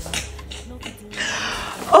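Light handling noises as a cardboard box and a pink plastic makeup organizer are moved. About a second in, a woman's drawn-out sing-song vocal sound begins, falling in pitch.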